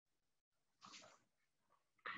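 Near silence: room tone, with one faint, brief sound a little under a second in.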